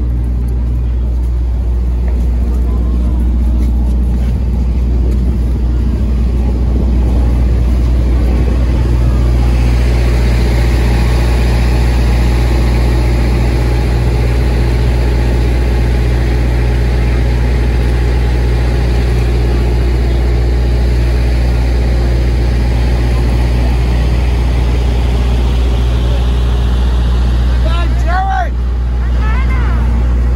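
Steady low hum of an idling vehicle engine, with crowd chatter over it. Near the end come a few short cries that rise and fall in pitch.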